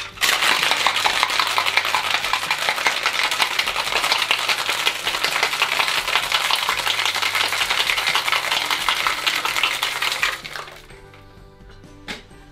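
Ice cubes rattling fast and hard inside a copper-coloured cocktail shaker being shaken to chill the drink, for about ten seconds, stopping shortly before the end. Soft background music underneath.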